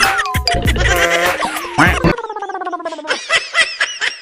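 Edited-in comedy sound effects and music: a wavering, bleat-like cartoon effect for the first two seconds, then a falling tone, then a quick run of struck notes at about five a second.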